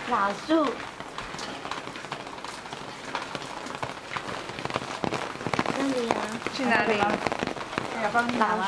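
Rain falling on an open umbrella overhead: a steady hiss of rain with many small, quick drop hits.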